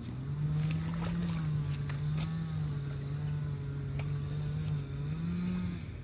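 Spinning fishing reel being cranked to bring in a hooked fish: a steady, slightly wavering whirr that starts and stops abruptly, with a few sharp clicks early on.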